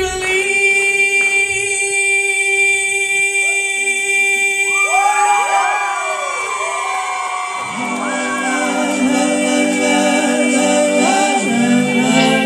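A male tenor voice holds one long, steady high note into a microphone. From about five seconds in, the audience cheers over it. Near eight seconds, other voices come in below it with a low sustained a cappella chord.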